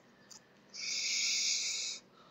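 A steady hiss lasting a little over a second, starting just under a second in, with a faint click shortly before it.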